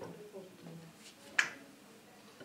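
A single sharp click about one and a half seconds in, over faint low talk.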